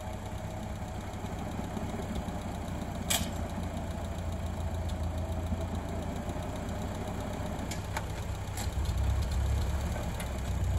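1948 Ford 8N tractor's four-cylinder flathead engine idling steadily, with a single sharp click about three seconds in; the engine gets louder near the end.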